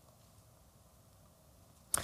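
Near silence with faint room tone, then one brief sharp click near the end as a man's voice begins.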